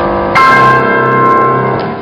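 Piano accompaniment for a ballet exercise: a ringing chord fades, then a loud, full chord is struck about a third of a second in and left to ring, dying away near the end as the closing chord.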